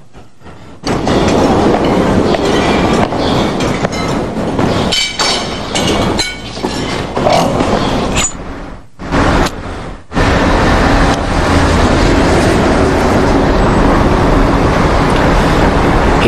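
Loud, continuous rumbling noise that starts about a second in and drops out briefly twice near the middle.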